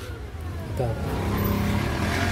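A motor vehicle's engine running, growing louder from about a second in.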